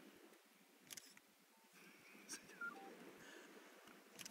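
Near silence: faint background with a couple of soft clicks, about a second and two and a half seconds in.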